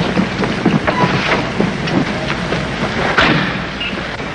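City street ambience: a steady, noisy rush of traffic with scattered short sounds mixed in.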